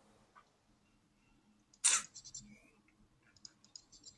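Quiet room tone broken by one short, sharp click-like noise about two seconds in, followed by a few fainter small clicks near the end.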